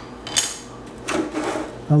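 Handling of 3D-printed plastic parts: a short clack as a printed plastic scraper is set down on the printer bed, then about a second of scraping as a printed plastic box is slid and picked up off the workbench.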